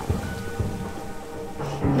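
Rain and low rumbles of thunder, a storm sound effect, under slow ambient music.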